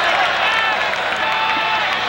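Football stadium crowd: many voices at once, shouting and cheering with some clapping, at a steady level as a play runs to a pile-up.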